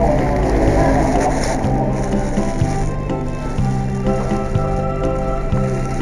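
Instrumental saxophone music with a backing track, its bass line stepping to a new note about once a second. A short patch of noise sits under the music in the first second or two.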